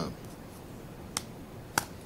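Two sharp finger snaps, about half a second apart, from a man trying to recall a word he can't think of.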